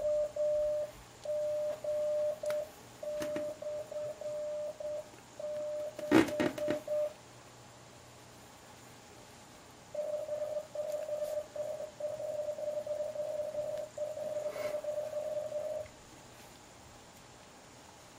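Elecraft K3's CW sidetone, a steady tone of about 600 Hz, keying Morse code sent from a memory: slower at first, then after a pause of a few seconds sent again faster once the code speed is raised. A sharp click sounds about six seconds in.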